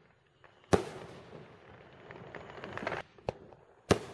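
Reloadable consumer aerial firework shells firing: a sharp bang about a second in and another just before the end, with a smaller report around three seconds. Softer hissing and crackling fill the gap between them.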